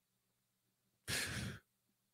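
About a second of near silence, then a man's short, breathy exhale, sigh-like, as he finishes his sentence on the word "that".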